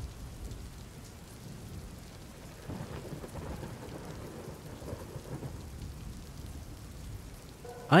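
Steady rain falling, with a low rumble of thunder swelling from about three seconds in and fading over the next few seconds.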